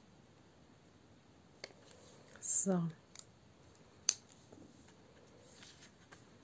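Faint handling clicks from a pen and a ring binder as a paper sheet is taken out of the binder, with one sharper click about four seconds in.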